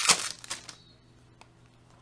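Foil trading-card pack wrapper crinkling in the hands for under a second, then a quiet stretch with one faint click.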